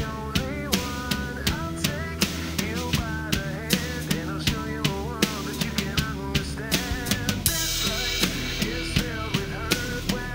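Rock drum kit played along with the recorded song: a steady kick-and-snare beat with cymbals over the track's pitched guitar and bass parts, and a long cymbal crash about seven and a half seconds in.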